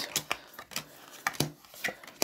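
Playing cards being handled and flipped over onto a tabletop: a few short, light taps and snaps.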